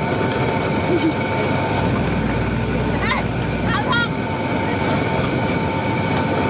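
Motorized sugarcane juice press running, its rollers crushing cane: a steady mechanical rumble with a constant whine.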